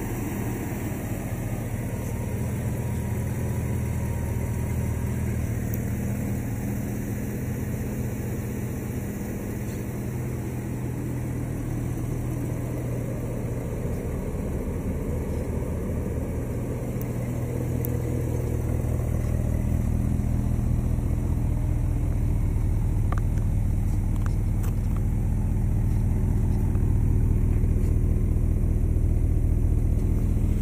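1988 Chevrolet Monte Carlo engine idling steadily, getting a little louder about two-thirds of the way through.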